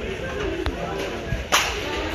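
Background chatter of other voices in a busy shop, with one sharp click about two-thirds of a second in and a louder, brief swishing burst near the end.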